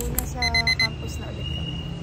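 Electronic beeping: four quick high beeps in a row about half a second in, like an alarm clock, then a fainter steady high tone, with a woman's voice underneath.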